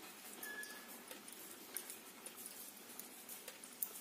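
Faint, scattered light clicks of knitting needles and yarn as stitches are worked by hand.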